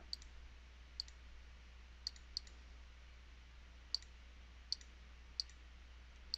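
Computer mouse clicking, about seven faint single clicks at irregular intervals, as keys of an on-screen TI-84 Plus calculator emulator are pressed one by one.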